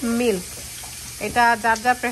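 A voice speaking in two short phrases, one at the start and one starting a little over a second in, over a low steady hiss.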